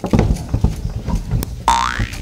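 Comedy sound effect: a run of low thuds, then about one and a half seconds in a short cartoon boing, a steeply rising pitch slide.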